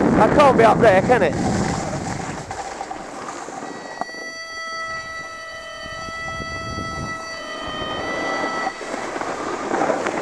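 Wind rushing over the camera microphone while snowboarding down a piste, with a person's voice calling out in the first second. From about four seconds in, a steady held tone of several notes sounds for nearly five seconds, shifting pitch slightly before it stops.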